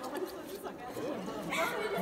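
Several people talking at once in the background: overlapping chatter.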